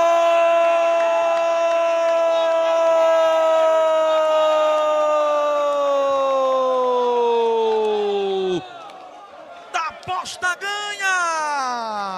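Football commentator's long drawn-out goal cry, 'Gooool', held for about eight and a half seconds and sliding slowly down in pitch, with the crowd cheering under it. After a brief lull a second held shout falls steeply in pitch near the end.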